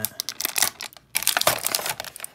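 Thin clear plastic accessory bag crinkling and crackling in the hands as a small toy rifle is worked out of it, a run of quick crackles with a brief lull about halfway.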